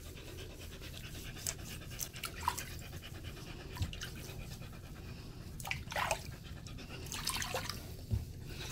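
Husky panting steadily, with brief splashes and sloshes of bathwater now and then as a hand scrubs her.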